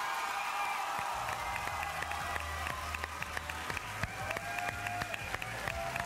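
Large audience applauding and cheering.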